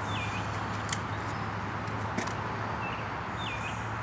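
A bird calling with short swooping whistles, once at the start and again near the end, over a steady outdoor hiss and low hum. Two sharp clicks come about one and two seconds in.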